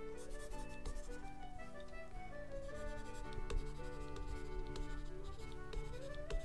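Stylus pen strokes scratching and tapping on a drawing tablet, with scattered small clicks, over soft background music with held notes.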